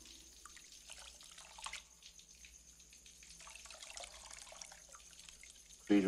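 Water being scooped by hand from a bowl, with soft splashes, trickling and scattered drips.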